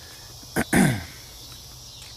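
A man clears his throat once, a short falling rasp about half a second in, over a steady background chorus of crickets.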